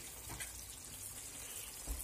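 Shakshuka's tomato sauce simmering in a frying pan over low heat, a faint steady sizzle, with a soft low bump near the end.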